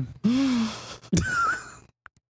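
A woman sighing heavily: a long breathy exhale with a low hum, then a second, higher-pitched breathy sound about a second in.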